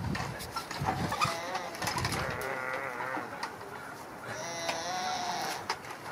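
Two wavering, bleat-like calls, the first about a second in and lasting about two seconds, the second shorter and raspier near the end.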